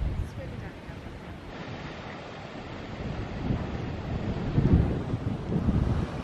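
Wind buffeting the microphone over the wash of surf breaking on rocks below, the gusts growing stronger in the second half.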